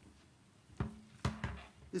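Two knocks from objects handled on a lectern close to its microphone, about a second in and again half a second later, with a short low hum between them.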